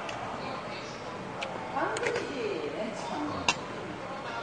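Metal spoon and chopsticks clicking against ceramic and metal dishes while eating, a few sharp clinks with the loudest about three and a half seconds in. A short stretch of voice is heard in the middle.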